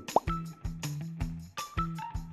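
A short rising plop sound effect just after the start, the loudest sound here, marking a new quiz question coming up. It plays over light background music with a steady beat.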